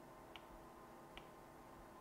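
Two faint, sharp taps of an Apple Pencil tip on an iPad's glass screen, just under a second apart, over near-silent room tone.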